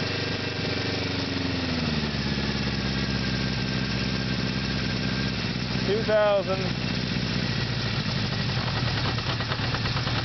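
Honda CB550's air-cooled inline-four engine running steadily. About a second in, its pitch drops as the revs come down from about 2,000 RPM, and it then settles into an even, lower-speed run.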